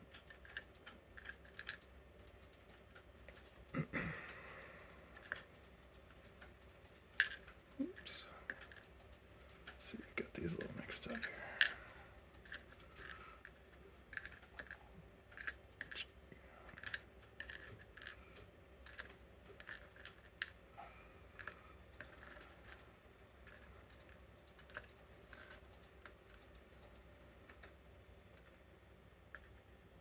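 Small, irregular clicks and taps of steel tweezers handling tiny lock pins and setting them into a pinning tray, with a busier patch about four seconds in and again around ten to twelve seconds.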